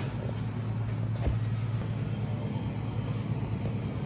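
Epson Stylus Pro 4900 wide-format inkjet printer running during a photo print: a steady low hum, with a faint click about a second and a quarter in.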